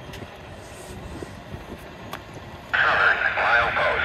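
A scanner radio abruptly cuts in about two-thirds of the way in with a loud, tinny, crackly radio transmission. Before it, only a faint outdoor background.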